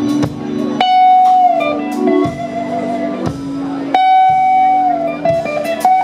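Live blues band with an electric guitar playing a lead line of long held notes, two of them struck about one and four seconds in and easing down in pitch, over bass and a drum kit.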